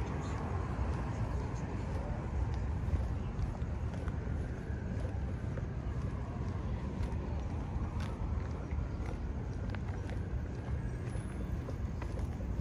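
Steady low rumble of city street ambience with distant traffic, heard on a body-worn camera while walking, with a few faint ticks.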